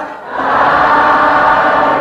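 A group of voices chanting together in unison, a Buddhist recitation. After a brief dip, one long sustained chanted line begins about half a second in and fades just before the end.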